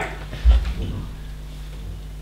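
A dull, low thump about half a second in, with a brief faint murmur, then a steady low hum of the hall.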